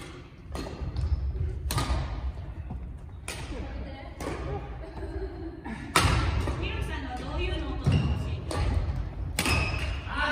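Badminton rackets striking shuttlecocks in a feeding drill, a sharp hit every second or so, echoing in a large gym hall, the loudest about six seconds in. Low thuds from footwork on the wooden court floor run under the hits.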